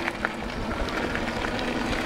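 Electric bike's tyres rolling on a gravel road: a steady noise with a few faint clicks.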